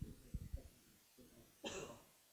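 Faint, muffled voice of an audience member asking a question away from the microphone, with one short cough near the end.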